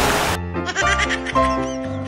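A loud splash of a person falling into canal water, cut off about a third of a second in, followed by playful background music with wavering, arching notes.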